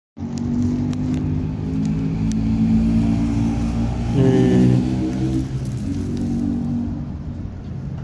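A motor vehicle's engine idling nearby, a steady low hum. A brief call rises above it about four seconds in.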